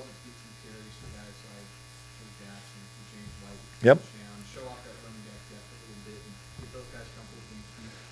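A steady low electrical hum under faint, distant speech, with one short word spoken close to the microphone about four seconds in.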